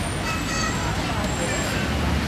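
Street ambience: steady road-traffic rumble with people's voices talking in the background.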